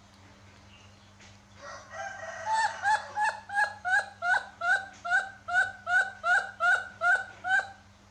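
Newborn baby monkey crying: a run of short, repeated cries at about three a second, starting softly about a second and a half in, growing loud, and stopping shortly before the end.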